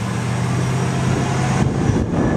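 Car engine running with a steady low hum over road noise as the car rolls slowly along.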